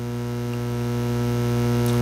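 Steady electrical mains hum in the sound or recording system: a low buzz with many overtones that slowly swells in level.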